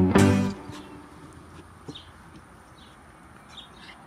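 Acoustic guitar background music ending on a last strummed chord that rings out within the first half-second. Then only faint outdoor ambience with a few short, high chirps.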